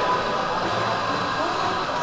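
Restaurant dining-room background: a steady hubbub with faint background music and distant voices.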